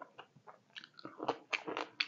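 Close-up chewing of a mouthful of silkworm pupae and rice: quick wet mouth clicks and crunchy smacks, growing louder and busier about halfway through.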